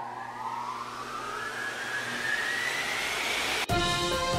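A synthesized riser sound effect: a whoosh of noise with a tone gliding steadily upward in pitch. It cuts off sharply near the end as music starts.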